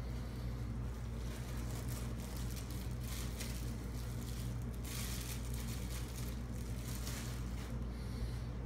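Clear plastic wrapping crinkling in a few short bursts as a statue part is unwrapped by hand, over a steady low hum.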